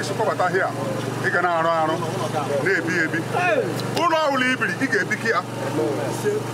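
Men's voices speaking and exclaiming, partly overlapping, over a steady low hum.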